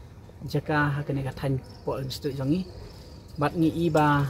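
A man speaking in short phrases, with a thin, steady, high-pitched insect trill in the background through the second half.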